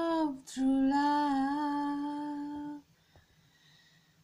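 A woman's voice singing unaccompanied: a phrase ends just after the start, a quick breath, then one long, nearly steady note that stops about three seconds in.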